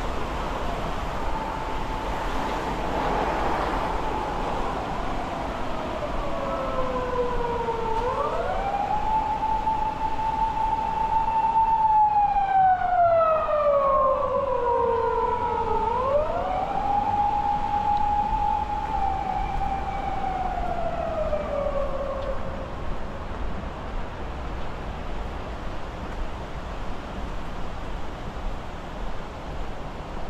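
A siren in a slow wail, its pitch climbing, holding and sinking over about eight seconds each cycle, rising twice and falling three times, over steady street traffic noise. It grows loudest about halfway through and fades out after about three-quarters of the way.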